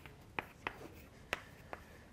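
Chalk writing on a blackboard: four short, sharp chalk strokes as numbers are written down the board.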